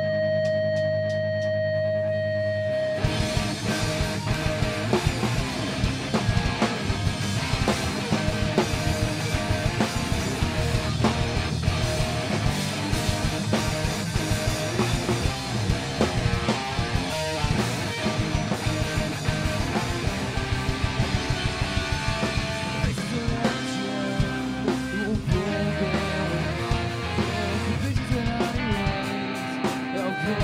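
Live rock band playing: for about three seconds a steady held chord drones, then drums and electric guitars come in together and the full band plays on at a steady loud level, without singing.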